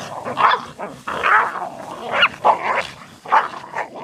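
Two laika dogs fighting, growling and barking at each other in a quick series of about half a dozen harsh bursts.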